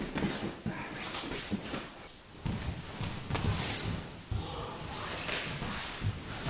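Two wrestlers grappling on a vinyl wrestling mat: bodies and knees thumping and scuffing on the mat, with two short high squeaks of wrestling shoes, about half a second in and just before four seconds in.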